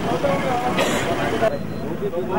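Indistinct talking among several people over steady street and traffic noise, with a short hiss about a second in.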